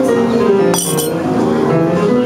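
Jazz piano played unaccompanied on a grand piano, a run of quick single notes over chords. A brief, bright high clink cuts through about three-quarters of a second in.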